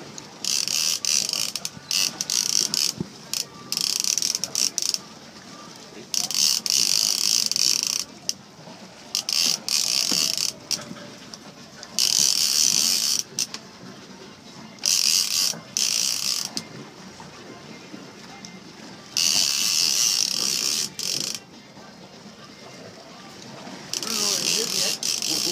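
A big-game fishing reel's ratchet clicker buzzing in repeated bursts of one to two seconds, with quieter gaps between, as a hooked fish is fought.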